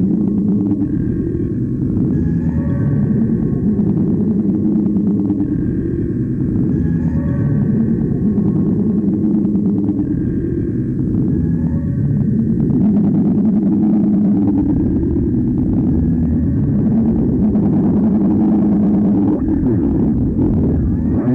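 Experimental tape-loop sound-poetry piece of whistles and voice in a reverberation chamber, layered on a repeating loop. A dense, low rumbling wash runs throughout, with short high whistle tones returning every few seconds that drop away about two-thirds of the way through.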